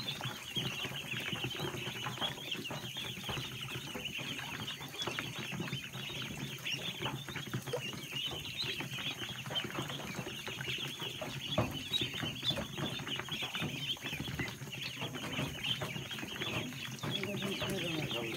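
A large brood of Khaki Campbell ducklings peeping continuously, many high calls overlapping into a dense chorus, with one brief knock about two-thirds of the way through.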